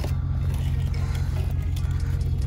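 A vehicle engine idling, a steady low rumble, with a few faint clicks as the trailer's metal drop-down jack is handled.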